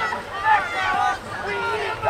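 Several overlapping high-pitched voices shouting and calling out, with no clear words.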